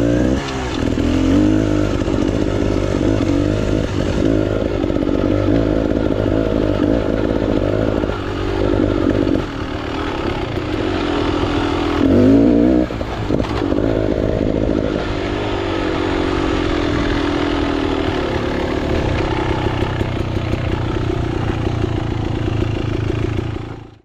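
Beta X-Trainer two-stroke dirt bike engine running as it is ridden along a trail, its note rising and falling with the throttle. It surges briefly about halfway through, then fades out at the end.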